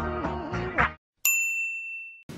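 Background music stops about a second in. After a short pause comes a single bright ding, a chime sound effect that rings out and fades over about a second.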